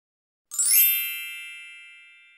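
Intro chime sound effect: one bright, shimmering ding of many high ringing tones that sounds about half a second in and fades away slowly.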